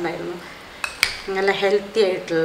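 A metal spoon clinking against a glass bowl while fluffing cooked rice, with two sharp clicks about a second in.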